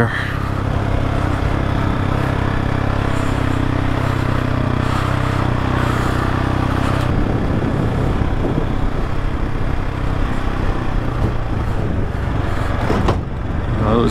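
Adventure motorcycle engine running steadily while riding a gravel track, with wind and road noise, the level dipping briefly near the end.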